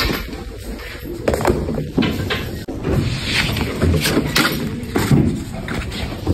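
Handling noise of a phone camera being moved around among classroom desks and chairs: irregular knocks, bumps and rustles, growing busier and louder after the first few seconds.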